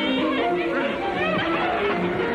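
Horror film soundtrack: a score of held notes mixed with high, wavering, arching shrieks or cackles from a distorted voice.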